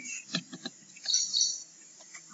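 A few faint short clicks, then a brief burst of high-pitched chirping about a second in, over quiet room tone.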